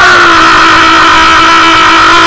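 A man's long, loud shouted cry held on one note through a microphone, dipping slightly in pitch at first and then steady.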